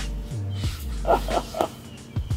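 Background music with a steady bass line, and a few short voice-like sounds about a second in.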